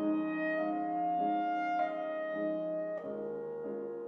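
Clarinet and grand piano playing a slow passage of a clarinet sonata: the clarinet holds long, smoothly joined notes, changing pitch every half second to a second, over sustained piano chords, with fresh piano chords struck about two and three seconds in.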